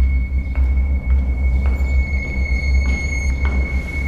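Dark film-score drone: a steady low rumble under a sustained high thin tone, with faint regular ticks.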